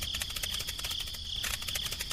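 Steady, high-pitched chirring of insects, a fast even pulsing.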